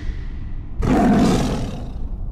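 Sound effect of an animated logo sting: a low rumble, then a sudden loud roar-like hit a little under a second in, which fades out over about a second.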